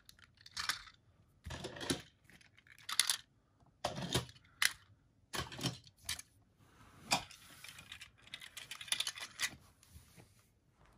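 Plastic Shift Car toys being handled and set down one after another, a series of short clicks and rustles about once a second.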